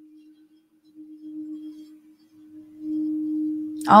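Frosted quartz crystal singing bowl played by rubbing a wand around its rim, giving one steady sustained tone that swells louder about a second in and again near the end.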